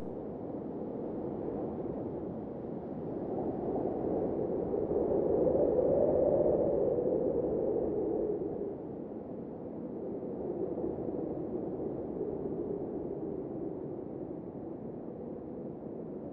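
A soft, muffled ambient noise bed with no tune or pitch, swelling to its loudest about six seconds in and then slowly fading.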